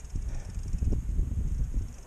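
Wind rumbling on the microphone of a mountain biker's action camera, with irregular knocks and rattles from the mountain bike as it moves.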